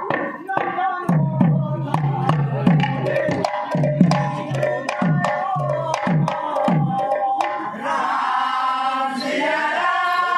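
A double-headed kirtan barrel drum (mridanga) is played in a fast rhythm of deep, bending bass strokes, with sharp metallic clicks from brass hand cymbals. The drumming stops about seven seconds in, and a voice takes up a long held sung note.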